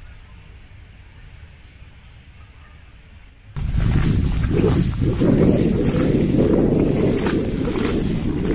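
Wind on the microphone: a faint low rumble that jumps suddenly to loud, gusty buffeting about three and a half seconds in, with rustling on top.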